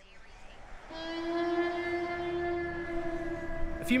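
A distant train horn sounding one long, steady note, starting about a second in.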